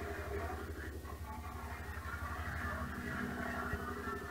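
Audio from a television or video game playing in the room: a steady, low, fast-pulsing rumble under faint background music, in a military scene with radio chatter on either side.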